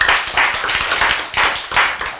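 A group of people clapping, a dense run of overlapping claps that dies down near the end.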